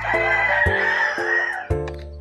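A rooster crowing once, one long call lasting about a second and a half, over background music with a steady beat.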